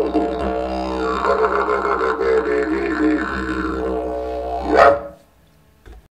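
Eucalyptus didgeridoo with a beeswax mouthpiece played as a steady low drone, its tone colour wavering as the mouth shapes it. A loud accent comes just before the end, then the drone stops.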